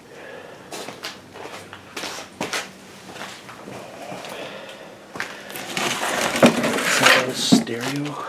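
Scattered knocks, clicks and scraping from someone moving about and handling things among wooden structures, busier and loudest in the second half.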